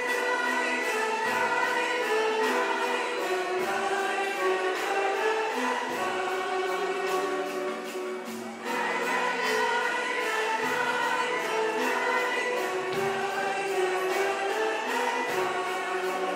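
Mixed choir singing a Turkish art music song with a traditional instrumental ensemble, low drum beats falling about every two seconds. The singing breaks briefly about halfway through before resuming.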